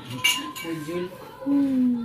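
A plastic spatula knocking and scraping against a glass mixing bowl and a foil baking tray while brownie batter is spread, with one sharp knock near the start.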